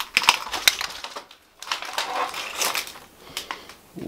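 Footsteps crunching over rubble and debris on a littered floor: a quick run of sharp crunches, a short pause, then more crunching.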